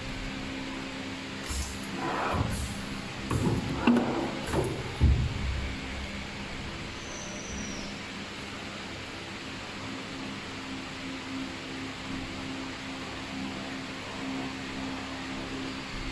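Steady machine hum of a screen printing machine or its workshop, holding a few low tones. Several sharp clicks and knocks come in the first five seconds as the printed bottle is lifted and handled.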